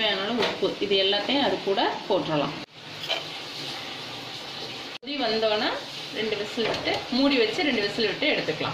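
A woman talking, with a steady hiss and no voice for about two seconds in the middle, set off by abrupt cuts at both ends.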